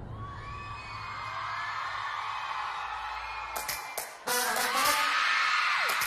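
Concert crowd of fans screaming and cheering, many high wavering screams over a low drone. The drone fades out about three and a half seconds in, and the screaming gets louder about four seconds in.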